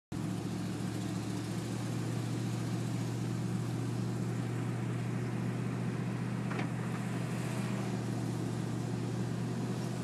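A car driving at steady speed, heard from inside the cabin: a constant low engine hum with road noise. A brief click about six and a half seconds in.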